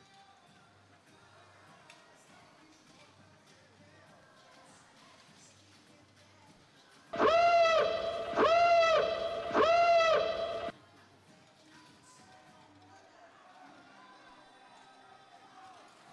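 FRC field's endgame warning sound, signalling that 30 seconds of the match remain: about seven seconds in, three loud horn-like tones, each rising and falling in pitch, running together for about three and a half seconds over faint arena background.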